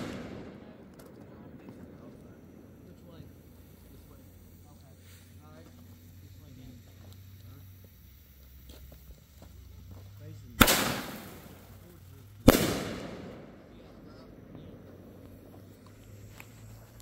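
Consumer aerial fireworks: the last of a shell burst fading away, then two loud bangs about two seconds apart near the end, each trailing off over a second or more.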